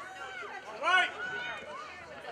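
Girls' voices shouting and calling out across a soccer field during play: several short overlapping calls, the loudest a high-pitched shout about a second in.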